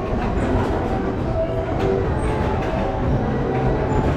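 Steady low rumble and clatter of a running carousel, heard from on board the turning platform.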